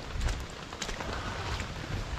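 Gusty wind rumbling on the microphone over a steady outdoor hiss, with a few faint ticks.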